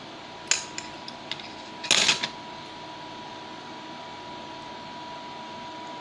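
A metal hand tool being handled and set down: a light clink about half a second in, a few small ticks, and a sharper metallic clatter about two seconds in. A steady faint background hum with a thin high tone runs underneath.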